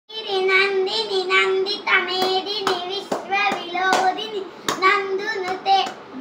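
A young girl singing long held notes, with several sharp hand claps from about two seconds in.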